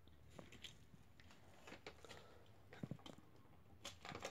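Near silence, with a few faint, scattered clicks and taps.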